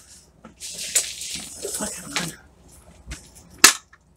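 Rustling and handling noise overhead, then one sharp click near the end as a grow-light hanger clip is unclipped.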